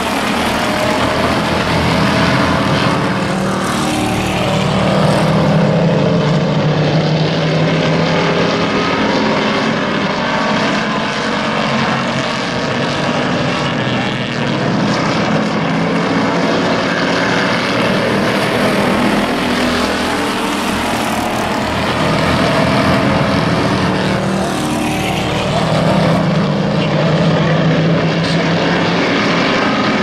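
A pack of hobby stock race cars running at racing speed around an oval track, their engines growing louder as the cars pass close, about five seconds in and again near the end.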